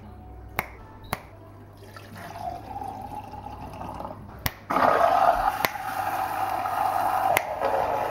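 Water poured from a glass into a plastic shaker bottle. The pour grows louder and fuller about five seconds in. A few sharp clicks come near the start.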